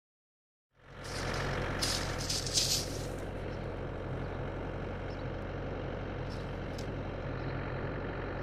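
A steady low motor hum starts about a second in and runs on, with a few brief crackles about two to three seconds in.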